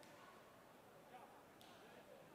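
Faint, distant voices of people talking in a large hall, with one short sharp click about a second and a half in.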